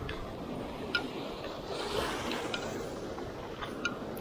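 Small waves washing onto a sand and shell beach with steady surf noise, punctuated by a few light sharp clicks of handling.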